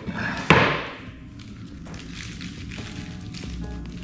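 A single solid thump about half a second in as a hardwood strip is set down on a wooden board, followed by light handling noise; background music fades in near the end.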